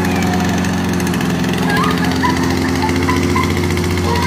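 Victa 505 Pro petrol lawn mower engine running steadily at an even speed while the mower is pushed across the lawn.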